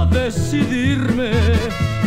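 Mariachi band playing an instrumental passage of a ranchera song: a melody with strong vibrato over a steady, pulsing bass.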